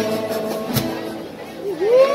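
Ensemble of acoustic guitars strumming the closing chords of a piece: a last strum about a second in rings out and fades. Near the end the crowd starts whooping and cheering.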